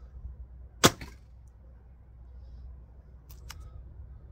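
A recurve bow shot: the string snaps forward on release about a second in, one sharp crack, with a fainter knock right after it. Near the end come a couple of light clicks as another arrow is handled.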